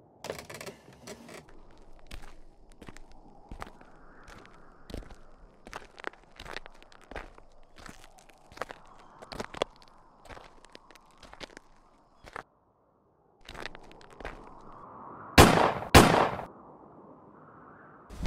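Footsteps on a dirt path, light and irregular. Near the end, two loud bangs about half a second apart.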